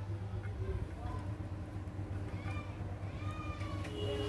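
A cat meowing faintly in the background, a few short calls that rise and fall in pitch, over a steady low hum.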